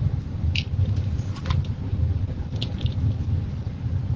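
A steady low rumble, with a few brief soft crinkles and clicks about half a second, a second and a half and three seconds in, from craft materials (poly burlap petals and a wreath board) being handled.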